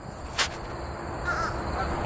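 Crows cawing faintly in the distance over a low rumble, with a single sharp knock about half a second in.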